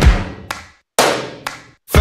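Music: a few heavy drum hits, each ringing out and fading, with brief gaps of silence between them.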